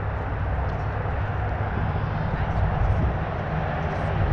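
Steady wind rumble on the microphone of a camera riding along on a moving bicycle.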